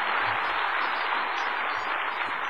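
Applause from a large audience, an even steady clatter slowly dying away.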